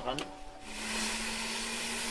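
Helicopter turbine noise: a steady rushing whine with a low, even hum under it, setting in about half a second in.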